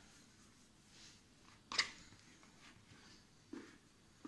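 Quiet kitchen handling sounds: a plastic mixing bowl being picked up and tipped over a floured worktop, with one sharp tap a little under two seconds in and a softer knock near the end.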